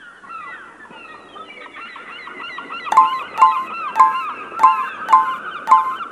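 Birds calling: many short chirping calls, joined about halfway through by loud, regular calls about two a second, growing louder.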